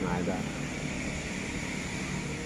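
Steady background noise, an even hiss and low rumble with no distinct events, after the tail of a spoken word at the very start.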